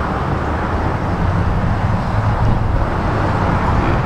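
Steady low rumble of a motor vehicle.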